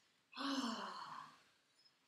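A single long, breathy sigh with voice in it, sliding slightly down in pitch and fading out over about a second.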